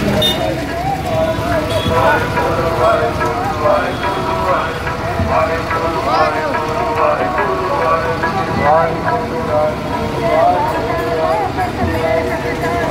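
People's voices going on throughout over a vehicle engine running steadily, with a few steady held tones beneath.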